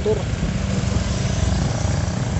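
A vehicle engine idling steadily.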